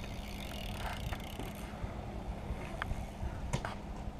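BMX bike tyres rolling on concrete, with a few faint clicks and a steady low hum underneath.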